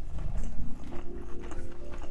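Close-miked chewing of grilled chicken and rice, with small mouth clicks, under a pitched tone that rises over the first second and then holds steady.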